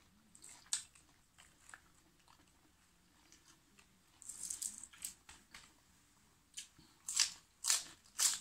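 Crisp lettuce leaves being handled and torn, with faint clicks and a short rustle midway. Near the end come loud crunching bites and chews, about two a second.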